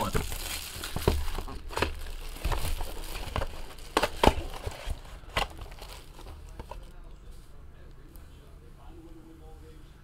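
Clear plastic shrink-wrap torn and crinkled off a trading-card box, with crackles and a few sharp clicks. It dies down after about five seconds.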